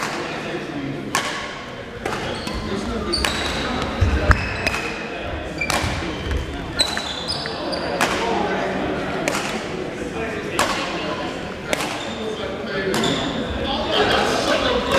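Badminton rackets striking a shuttlecock in a doubles rally, a sharp hit roughly every second, each echoing briefly in a large hall, over background voices.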